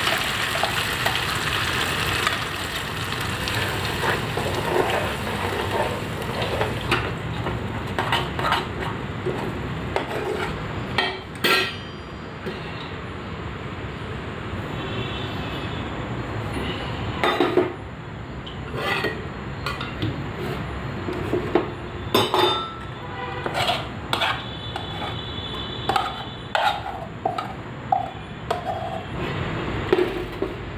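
Sizzling for the first several seconds as red chilli paste goes into a hot steel pot, then a run of sharp metallic clinks, knocks and scrapes of steel utensils, lid and pot, some with a short ring.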